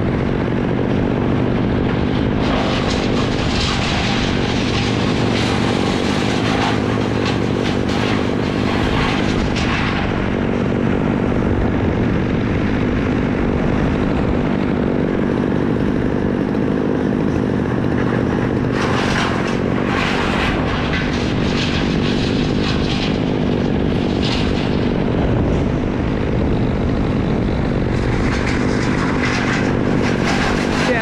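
An engine runs steadily, a continuous low drone. Bouts of crackling, rustling noise lie over it in the first ten seconds and again around twenty seconds in.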